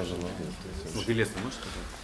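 Speech only: a man's hummed "mm-hmm" about a second in, amid quiet talk.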